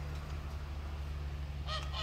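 A waterfowl honking briefly near the end, over a steady low rumble.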